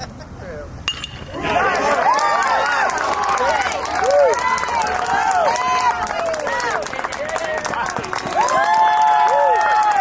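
A metal baseball bat pings about a second in as the batter hits the pitch, followed by many people yelling and cheering as he runs it out to first base.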